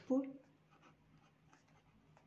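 Pen writing on notebook paper: faint, short scratching strokes as a hand-written word is lettered.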